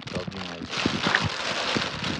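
A thin plastic bag holding water and live fish crinkling and rustling as a hand works in it, a dense crackle that starts about two-thirds of a second in.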